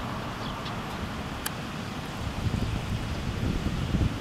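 Wind blowing across the camera microphone, a steady low rumbling hiss that turns gustier in the second half, with a faint click about a second and a half in.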